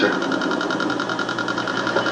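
Steady machinery hum with a fast, even pulsing: a submarine-interior sound effect from a 1960s TV soundtrack, heard from a television.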